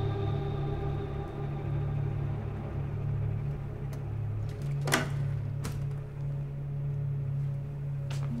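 A low, steady droning music score, broken about five seconds in by a sharp click and a smaller one just after, as an office door is unlatched and swung open.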